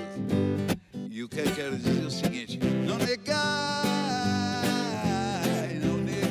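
Acoustic guitar strummed in a steady rhythm, with a man's voice singing a long held note that starts about three seconds in.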